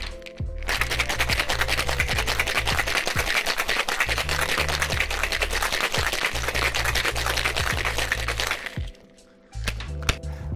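Ice cubes rattling fast and hard inside a Boston shaker (metal tin sealed on a mixing glass) during a vigorous wet shake, starting just under a second in and stopping abruptly about a second and a half before the end. Background music with a steady bass line plays under it.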